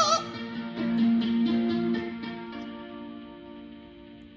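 Electric guitar (a Hamer) playing a few chords, the last one held from about two and a half seconds in and left to ring out and fade away as the song ends.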